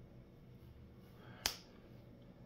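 A single sharp click about one and a half seconds in, against faint steady room hum.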